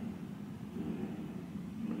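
Room tone in a small room: a steady low hum with faint hiss.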